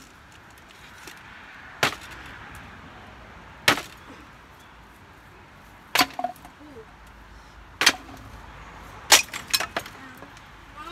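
Scrap wooden boards being struck and broken: five sharp wooden cracks about two seconds apart, the last two each followed by a few quicker, lighter knocks.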